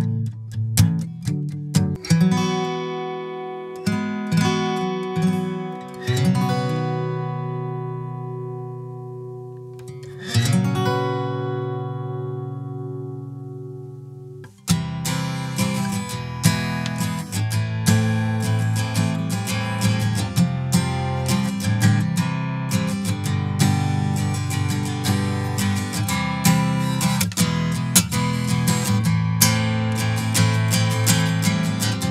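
Faith mango-wood steel-string acoustic guitar being played: a few chords struck in quick succession, then two chords left to ring and fade out, then busier, steady strumming from about halfway on.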